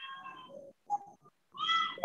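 Two high-pitched, whining calls with a clear pitch. The first is held for most of a second at the start; the second is short and rises then falls near the end.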